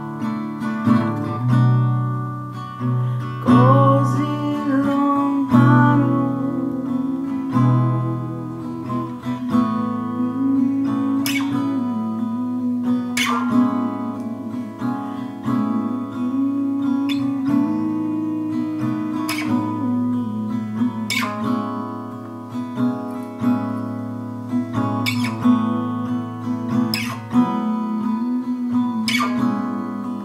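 Acoustic guitar playing a folk song, picked and strummed, with sharp accented strums about every two seconds in the second half.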